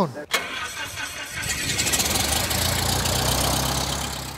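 Single-engine Cessna trainer's piston engine starting and running with its propeller turning: it comes in about a second and a half in, gets louder, then holds a steady idle.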